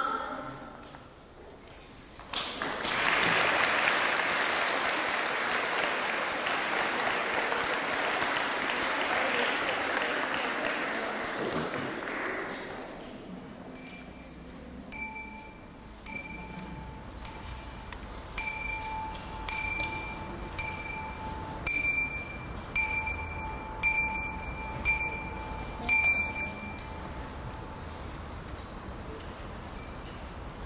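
Audience applauding for about ten seconds, fading out. Then a bell-like ringing tone is struck again and again, roughly once a second.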